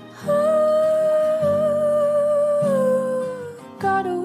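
A pop ballad starting after a brief gap. A long hummed vocal note is held over soft guitar chords, slides down a step about three seconds in, then gives way to the melody proper.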